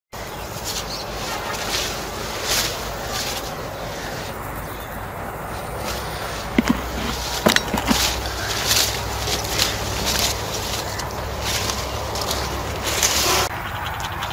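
Footsteps and leaf rustling as someone walks through rows of sweet potato vines, at a steady walking pace, with a few sharp clicks near the middle.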